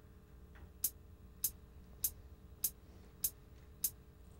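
Count-in clicks on a backing track: six short, sharp clicks at an even pace, a little under two a second, over a faint low hum from the bass rig.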